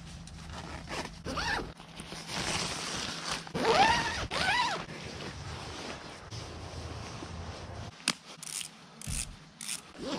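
A zipper pulled in a few quick strokes, loudest about four seconds in, amid rustling fabric and handling noise.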